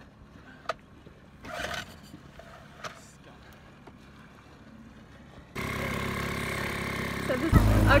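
A few faint clicks and knocks in near quiet, then from about five and a half seconds in a dinghy outboard motor running steadily, louder near the end.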